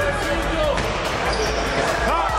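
Basketball game sounds in a large gym hall: the ball bouncing and knocking on the court, with players' voices calling out.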